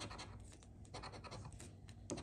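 A silver coin scraping the coating off a scratch-off lottery ticket in quick, faint strokes.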